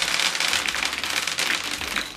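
Jelly beans pouring out of an opened flashlight and scattering across a bathroom countertop: a dense patter of many small hard candies clicking and bouncing.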